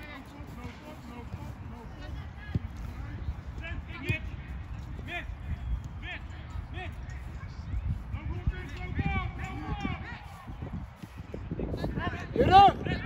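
Players' short shouts and calls across a football pitch, thickening near the end, with a couple of thuds from the ball being kicked and a steady low rumble underneath.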